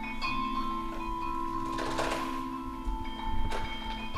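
Mallet-percussion music: a few notes ringing on steadily, with occasional struck accents.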